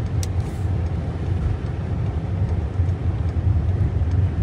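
Steady low rumble of a car driving, heard from inside the cabin, with a brief click about a quarter second in.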